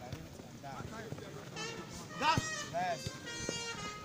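Several voices calling and shouting across the pitch, with a few short thuds of a football being kicked.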